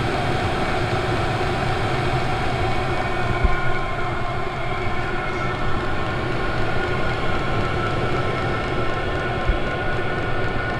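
Chinese 8 kW all-in-one diesel parking heater running steadily on its default setting, the burner and blower fan making a steady roar with faint whining tones. Two short low bumps come through, one about three and a half seconds in and one near the end.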